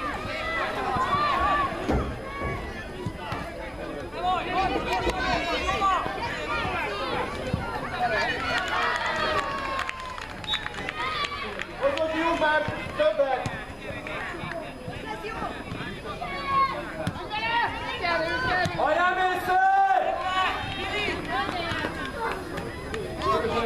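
Voices calling and shouting across an outdoor football pitch during play, several at once and overlapping, many of them high-pitched.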